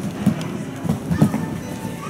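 A cantering horse's hooves thudding on sand arena footing, a few dull irregular beats, the loudest about a second and a quarter in, over background music.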